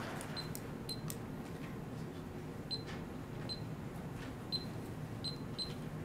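Quiet room hum with about eight short, high-pitched chirps at irregular intervals, and a few faint clicks.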